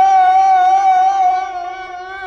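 A single long held note in a mugham performance, one pitch sustained with a slight waver at its start, growing a little quieter in the second half.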